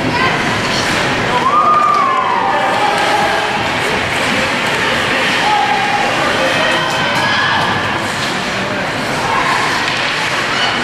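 Spectators in an ice arena shouting and cheering during play, a steady hubbub of voices with scattered drawn-out calls; one call a little over a second in falls in pitch.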